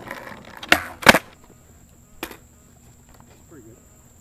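Two loud, sharp knocks close together about a second in, then a fainter knock a second later.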